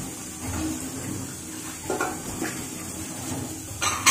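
Pork and carrots sizzling steadily in an aluminium wok, with a metal spatula scraping the pan a few times; near the end a sharp clank as the aluminium lid is set on the wok.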